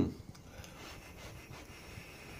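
A long, steady drag on an e-cigarette mod: faint airflow hiss as vapour is drawn through the atomizer.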